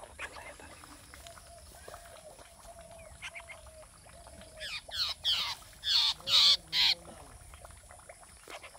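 A babbler giving a quick run of about six harsh, downward-sweeping calls in the second half, the last few loudest.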